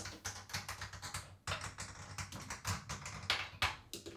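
A plastic chip falling down a wooden Plinko board, clicking rapidly and irregularly as it bounces off the pegs, with a few louder knocks near the end as it drops into a slot at the bottom.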